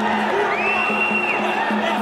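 Arena crowd noise over music with a pulsing beat. A long high note is held for about a second in the middle.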